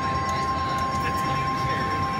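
Slot machine counting up a 175-credit bonus win on its win meter, a steady tone over the constant hum and chatter of a casino floor.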